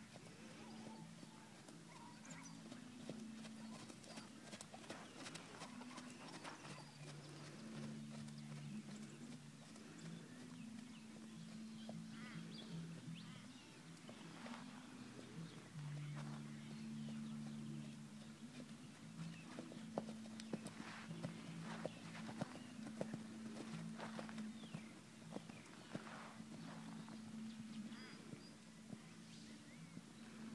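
A horse being ridden at trot and canter on a sand arena, heard faintly: soft hoofbeats and scattered clicks, over a low hum that holds and steps between a few pitches.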